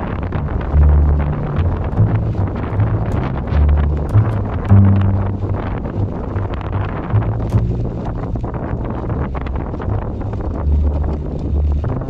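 Wind rushing over the microphone of a camera riding on an e-mountain bike, with the tyres crunching and rattling over a gravel track.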